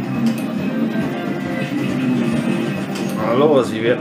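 Electronic slot-machine music from a Merkur game during free spins: a steady, looping melody as the reels spin. Near the end comes a short warbling sound that rises and falls.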